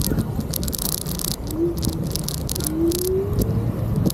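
Handling noise from a camera moving over paving: a steady low rumble with irregular rattling. Two short rising tones come through, one about a second and a half in and a longer one near three seconds.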